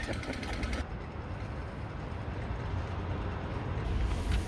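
Steady low rumble of passing road traffic, with no sharp events.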